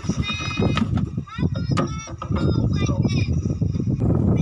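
Indistinct voices from a film playing in the background, pitch sliding up and down, over a steady low rumble.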